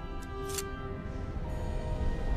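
Orchestral film score with sustained notes over a heavy low bed. A short, sharp metallic snick a little over halfway through, as a hinged piece is pulled out from the dagger's crossguard.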